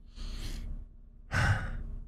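A person breathing audibly into the microphone between phrases: two breaths, the second one fuller, like a sigh.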